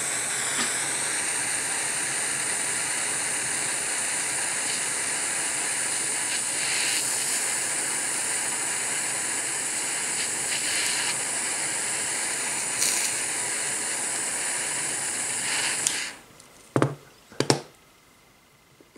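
Handheld butane jet torch burning with a steady hissing flame, shut off about two seconds before the end, followed by a couple of sharp clicks.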